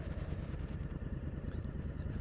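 Motorcycle riding along at a steady speed: the engine running evenly under wind and road noise.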